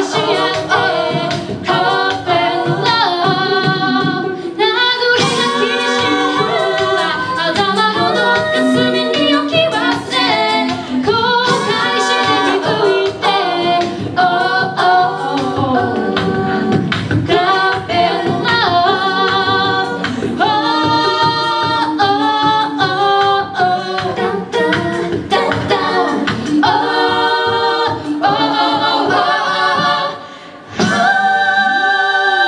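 Six-voice female a cappella group singing in close harmony through handheld microphones, with short percussive sounds keeping a steady beat under the chords.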